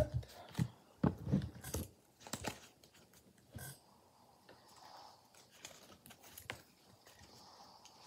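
A deck of oracle cards being shuffled by hand: scattered clicks and slaps of card on card, most of them in the first two and a half seconds, sparser after.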